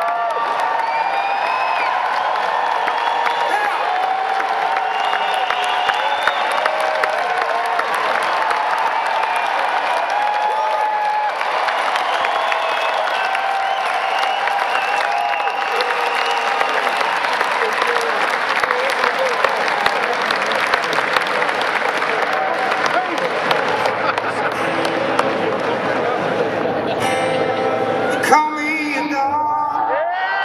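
A large concert audience clapping and cheering, with many whoops and shouts over the dense applause.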